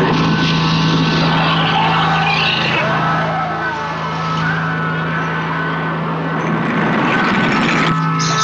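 Horror film trailer soundtrack: a steady low drone under a dense rushing noise effect with wavering, screeching high tones, strongest in the first half.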